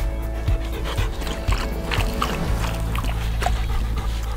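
English cream golden retriever panting, over background music with steady low tones.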